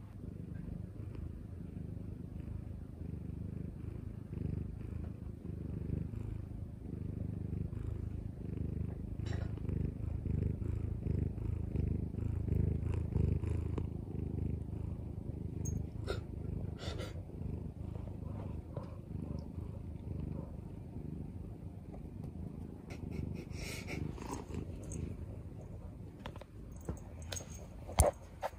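A Munchkin cat purring steadily close to the microphone, with a few light clicks in the second half.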